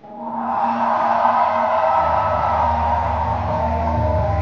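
Loud live music from a concert sound system, with heavy bass coming in about two seconds in.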